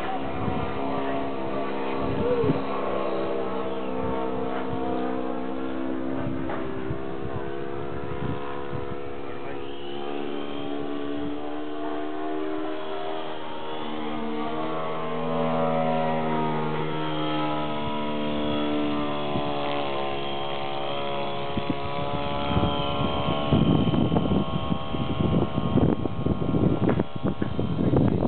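The electric motor and propeller of a small foam RC plane buzz in flight, the pitch stepping up and down several times as the throttle changes. In the last several seconds, gusts of wind buffet the microphone.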